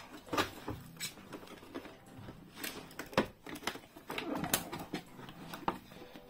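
Irregular plastic clicks and knocks from hands working the brush roll and its stretched rubber drive belt into the plastic head of a cordless upright vacuum cleaner.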